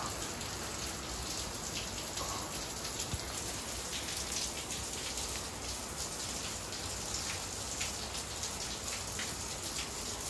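Steady rain falling: a continuous hiss with a light patter of individual drops on hard surfaces.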